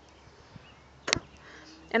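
A single short, sharp click or snap a little over a second in, against quiet outdoor background.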